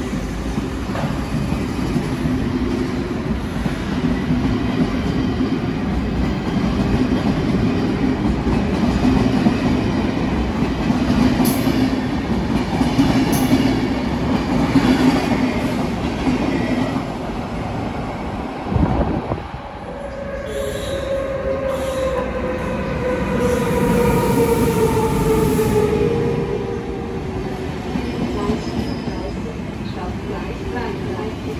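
SBB passenger train rolling along an underground station platform, a dense steady rumble with a hum. About two-thirds of the way in it gives way to a double-deck train pulling in, with a whine that falls slowly in pitch as the train slows.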